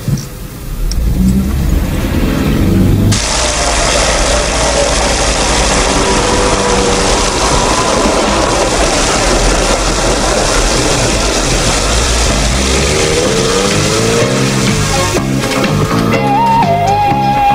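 Car engine and street traffic. About three seconds in, a steady rushing noise starts suddenly and holds. Near the end an engine rises and falls in pitch.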